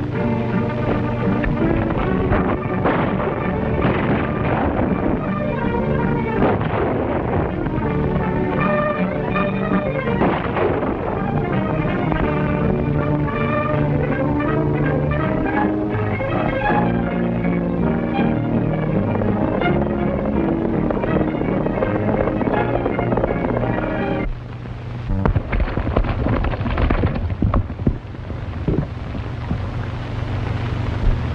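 Orchestral Western film score playing over a horseback chase; near the end the music cuts out and a run of irregular sharp knocks follows.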